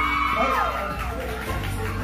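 Crowd whooping and cheering over background music: a long high-pitched "woo" slides down and ends about half a second in, leaving crowd murmur over the music.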